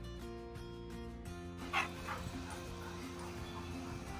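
Background music, with a single loud dog bark about two seconds in, followed by a few fainter short yips.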